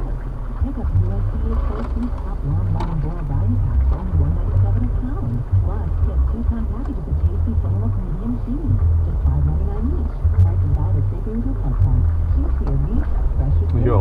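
Jeep engine running at low revs in first gear as it crawls down a steep muddy trail, heard from inside the cab: a low rumble that swells and drops every second or so as the throttle is worked.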